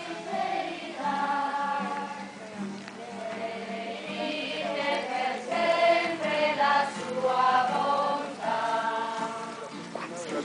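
Choirs singing a hymn in held notes that change about once a second. Two choirs are singing at once and blending into each other as they draw closer.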